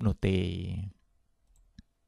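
A man's voice holds a drawn-out syllable for about the first second, then near quiet and a single computer mouse click near the end.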